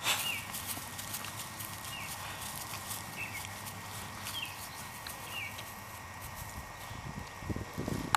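A bird calling a short hooked note over and over, about once every second or so, over faint scattered clicks and rustles.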